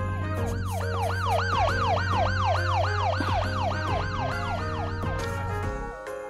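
Background music with a wailing, siren-like sound effect laid over it, its pitch sweeping up and down about three times a second; the effect fades out about five seconds in, and the music's bass drops out near the end.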